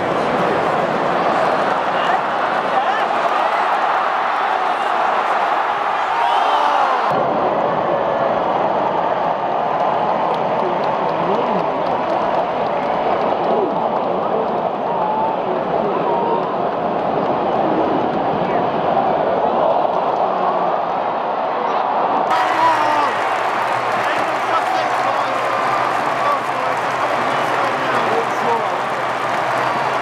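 Football stadium crowd: a steady din of thousands of voices at once. The sound cuts abruptly to a duller recording about seven seconds in and back again about 22 seconds in.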